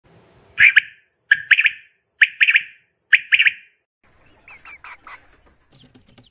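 A bird calling loudly four times, about a second apart, each call made of two or three quick harsh notes. A few fainter, gliding calls follow in the second half.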